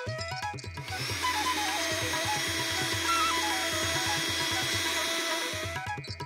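A small electric mixer grinder running steadily, starting about a second in and stopping just before the end. Instrumental background music plays throughout.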